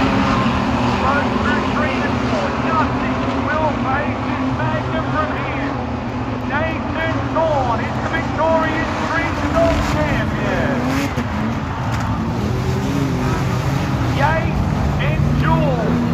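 Street stock race car engine running steadily around a dirt speedway, under a crowd's many overlapping voices and shouts.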